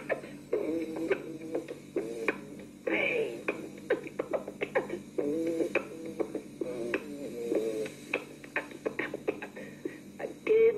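A man beatboxing a cappella: rapid mouth clicks and vocal percussion laying down a rhythm, with short hummed melodic phrases over it.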